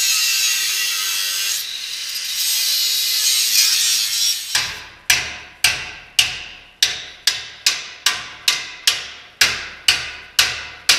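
An angle grinder cutting through steel frame tubing for about four and a half seconds, then stopping. After that, a hammer striking the steel about twice a second, each blow ringing.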